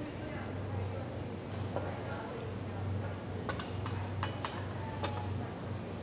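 A few light clinks and taps of glassware and bar utensils being handled on a worktable, with a quick run of four sharp ones a little past the middle, over a steady low hum.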